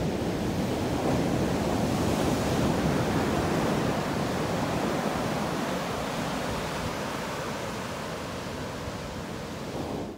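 Ocean surf breaking and washing up a sandy beach, swelling about a second in and slowly easing off.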